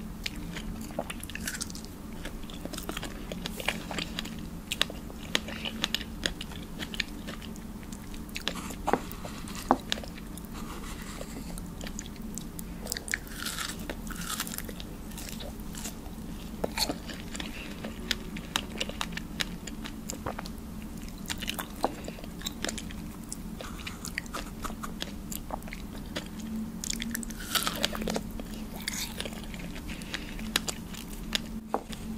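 Close-miked eating of fresh strawberries: juicy, wet chewing with many quick mouth clicks and smacks, and a bite into a berry about halfway through.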